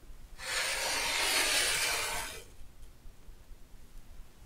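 Rotary cutter blade rolling through layers of cotton fabric along a quilting ruler's edge on a cutting mat: one steady rasping stroke lasting about two seconds.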